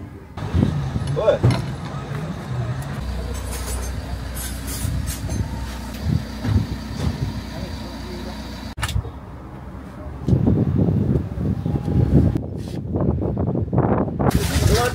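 Town street sounds: a motor vehicle running steadily for several seconds, cut off suddenly, then voices talking.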